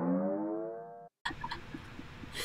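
A comedy punchline sound-effect sting: a single struck, ringing pitched note that slides slightly upward as it fades, cut off about a second in. After the cut, faint room tone.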